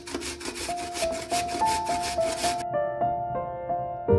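Raw potato being grated on a stainless steel box grater: quick rasping strokes about four a second that stop a little under three seconds in. Soft piano music plays throughout.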